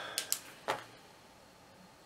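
A meter probe tip making contact with a metal connector pin: a few light clicks in the first second, the clearest one about two-thirds of a second in, then faint room tone.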